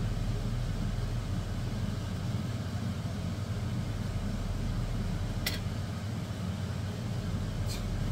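Kitchen range-hood extractor fan running with a steady low hum and hiss, with two brief clicks, one about halfway through and one near the end.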